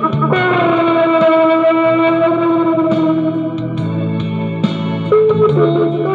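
An electric guitar played through effects carries the melody of a song cover in long sustained notes, one held for about three seconds, over a backing track with a steady bass line.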